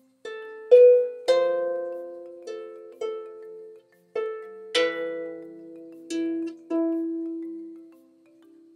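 Harp played slowly: about nine plucked notes in the middle register, each left to ring and fade, with a short break partway through.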